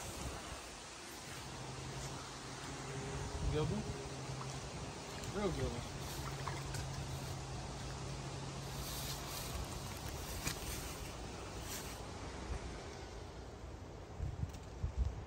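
A flying insect buzzing in a steady low drone near the microphone, in two long spells, the second starting about six seconds in.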